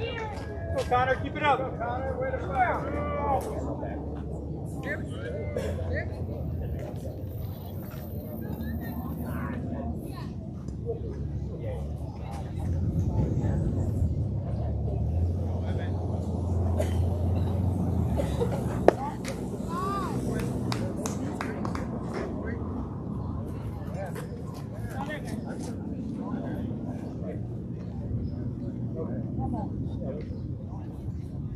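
Outdoor baseball-field sound: raised voices calling out for the first few seconds, then a steady low rumble with faint scattered voices, and one sharp pop a little past the middle.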